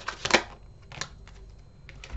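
Tarot cards being handled: a last quick burst of shuffling clicks, then a few soft, scattered card clicks as a card is drawn and laid on the spread.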